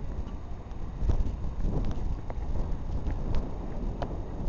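Wind buffeting the microphone in a steady low rumble, with a few faint knocks scattered through it.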